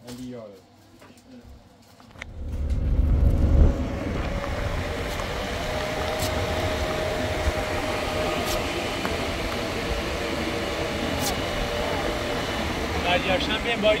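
A car driving on a road, heard from inside the cabin: steady engine and road noise. It starts about two seconds in with a louder low rumble for a second or so.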